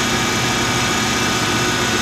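1994 Lexus LS 400's 4.0-litre V8 idling steadily, just started on a newly replaced fuel pump after years of sitting unstarted.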